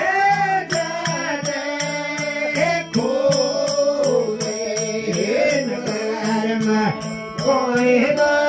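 Rajasthani folk bhajan: a man singing a bending, ornamented melody over harmonium, with a steady low drone underneath. A high metallic jingle keeps a regular beat, about three strokes a second.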